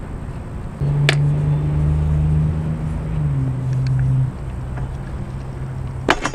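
A single sharp click about a second in, then a steady low hum that holds for about three seconds and cuts off suddenly, over a constant low rumble.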